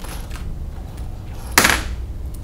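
Hands moving loose wires and cables: a few faint ticks early, then a short rustling hiss about one and a half seconds in, over a low steady hum.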